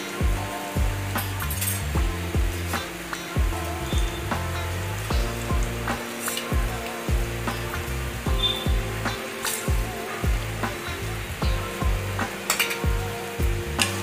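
Onion-and-tomato masala sizzling in a steel pan while a metal spoon stirs it, knocking and scraping against the pan many times, as tomato sauce is mixed in. Background music plays underneath.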